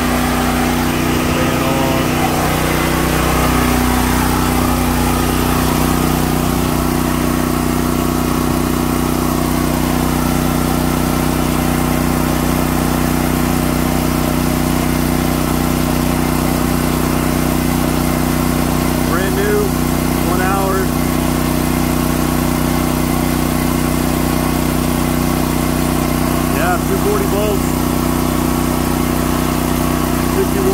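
Westinghouse WGen9500DF dual-fuel portable generator, a single-cylinder gasoline engine, running steadily with an even drone while carrying a heavy electrical load: a 4-ton central AC plus most of a house's circuits.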